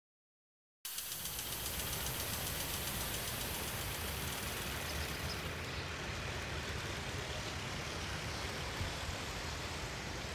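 Steady background noise, a low hum with hiss over it, starting suddenly just under a second in after dead silence; the high hiss thins out about halfway through.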